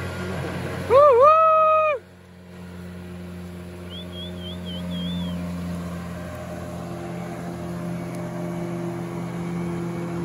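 Outboard motorboat engine running steadily, its hum building a little as the boat passes. About a second in, a loud held call lasts about a second; a faint high warble follows a few seconds later.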